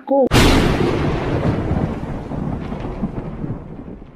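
A sudden loud crack of thunder that starts at once and rumbles away over about three seconds: a thunderclap sound effect used as a dramatic transition.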